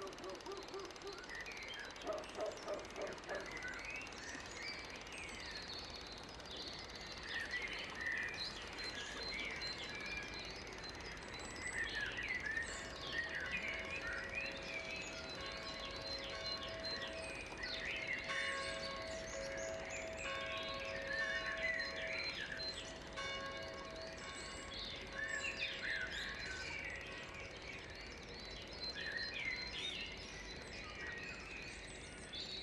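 Birds singing, many short chirping calls overlapping throughout, with a frog croaking in the first few seconds. From about twelve seconds in to about twenty-five seconds a steady held tone sounds beneath the birdsong.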